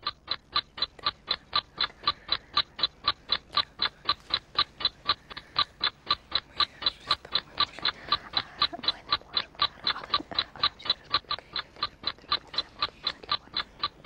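Countdown timer ticking steadily at about four ticks a second, counting down the one-minute thinking time.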